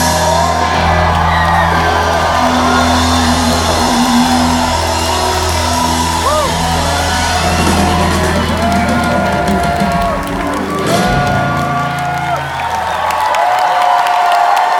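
Live rock band with electric guitars, bass, keyboards and a drum kit playing the final bars of a song, with audience whoops over the music. The band stops about a second before the end, and cheering carries on.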